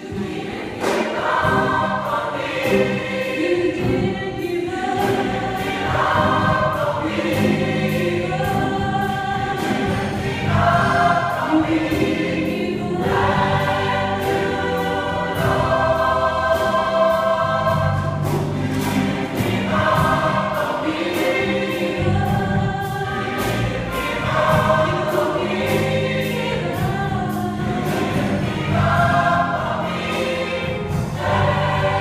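A mixed gospel choir singing a song of thanks with a steady beat, about two a second, and sustained low accompaniment underneath.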